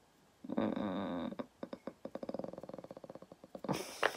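A person's wordless, frustrated groan. It starts about half a second in, breaks after about a second into a fast, creaky rattle lasting about two seconds, and ends with a short breath near the end.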